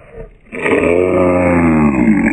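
A tabby cat's long, low yowl, starting about half a second in and sagging slowly in pitch as it grabs at a hand.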